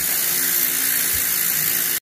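A steady hiss at an even level, with a faint low hum beneath it.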